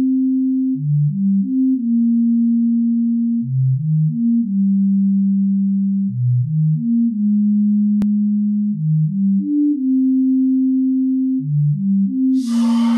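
Music: a pure sine-wave synth tone playing a slow low melody. Each phrase is a quick run of two or three short notes into a long held note, repeating about every two and a half seconds.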